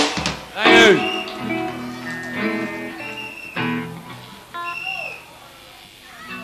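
Live rock band: a loud hit at the start, a swooping, bending note just under a second in, then scattered sustained electric guitar notes that grow quieter toward the end.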